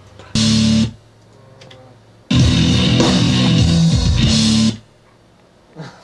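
Electric bass guitar played loud: a short chord stab about half a second in, then a riff of about two and a half seconds that stops abruptly.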